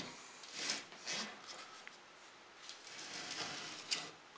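A monitor lizard's claws scrape softly on the edge of its enclosure in a few short bursts as its feet slowly slip and are pulled back up. There is a sharp click near the end.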